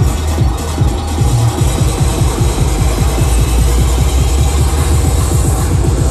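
Loud, bass-heavy electronic dance music from a DJ set over a club sound system, recorded on a phone: a heavy, sustained low bass under a busy, fast beat.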